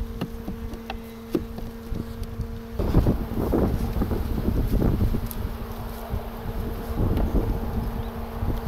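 Honeybees buzzing over an opened hive, a steady low hum. About three seconds in, a louder noise rises over it and partly covers it for a couple of seconds.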